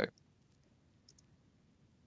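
Near silence with a couple of faint, short clicks about a second in.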